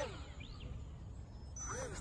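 Low background noise with a faint, thin, high whine: the brushed motor and propeller of a micro RC jet just after it is hand-launched.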